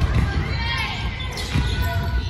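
Volleyball practice in a gymnasium: balls thumping against hands and floor over and over, with girls' voices calling out.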